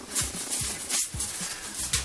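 Coarse salt crunching and rattling as gloved hands rub and knock it off a piece of salt-cured beef, in short irregular scrapes.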